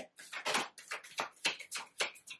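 Tarot cards being shuffled by hand: a quick, uneven run of crisp card-on-card flicks and taps, about five a second.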